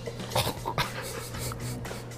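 A person's mouth noises and short wordless sounds of tasting food off a spoon, a few brief clicks and breaths, over a low steady hum.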